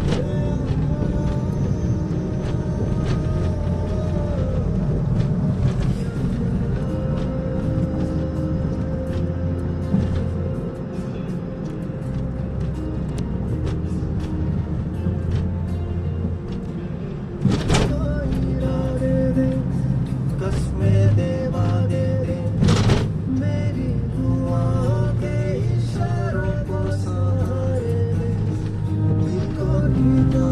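Music laid over the drive: held melody notes over a changing bass line, with two sharp clicks partway through.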